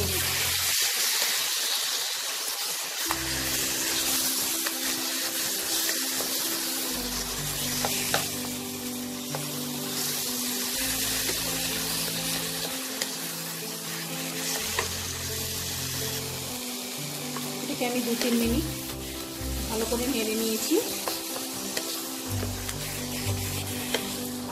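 Mashed roasted eggplant (baingan bharta) with onion and tomato sizzling in hot oil in a nonstick wok while it is stirred and pressed with a wooden spatula, with a few sharp clicks of the spatula against the pan. Background music plays over it.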